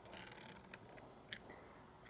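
Near silence, with faint scraping and a light click of a stainless steel spoon in a small lead-melting hot pot as slag is skimmed off the molten lead.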